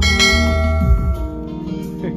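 Song accompaniment ending on one bell-like chord, struck at the start and left ringing as it slowly fades.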